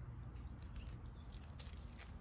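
Clear plastic grafting tape being pulled and wrapped around a lemon-tree graft, giving a few short, faint crinkles and ticks over a low steady rumble.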